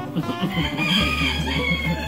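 A rooster crows once, one long call lasting about a second and a half that starts about half a second in.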